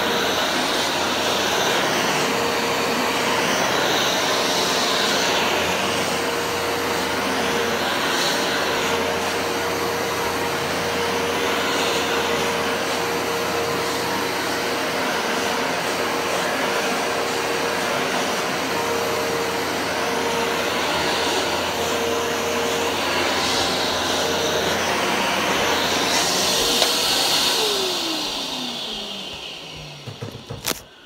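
A Hoover Power Max upright carpet cleaner runs steadily while it is pushed back and forth over a rug, its sound swelling with each stroke every few seconds. Near the end it is switched off and the motor winds down, its whine falling in pitch.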